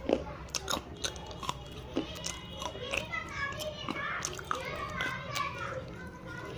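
Dry, brittle clay of a diya being bitten and chewed: a string of sharp crunches, the loudest right at the start. Children's voices are heard in the background from about two seconds in.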